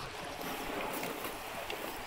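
Steady wash of shallow river water and wind, with a few faint splashes from cattle wading through the stream.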